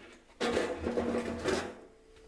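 A noisy rustling, scraping handling sound lasting about a second and a half.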